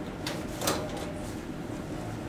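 A metal school locker door shutting, heard as one sharp knock about two-thirds of a second in, over a steady low room hum.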